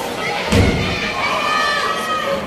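A single heavy thud about half a second in: a wrestler's body landing on the wrestling ring. Shouting voices from the crowd follow.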